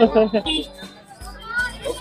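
Speech only: people talking, a child's voice among them, over background music.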